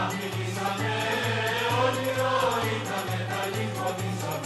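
Background music: a choir singing over a low note that repeats about twice a second.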